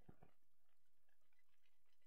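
Near silence: faint room tone with a few soft scattered clicks.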